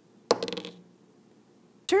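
A die rolled onto a hard tabletop: one sharp hit followed by a quick rattle of bounces, with a short ring, settling within about half a second.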